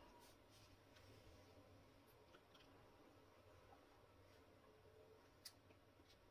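Near silence: room tone, with a faint click about five and a half seconds in.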